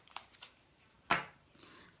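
A deck of tarot cards shuffled by hand, with faint card flicks and one sharp slap of the cards about a second in.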